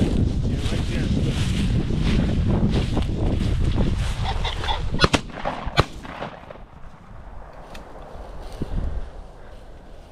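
Footsteps and rustling through dry grass with wind on the microphone, then a flushed game bird's calls and two shotgun shots less than a second apart, about five seconds in.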